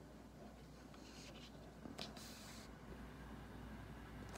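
Faint rustling of a paper picture book's pages as it is held open in the hands, with a soft click about two seconds in, over a quiet room hum.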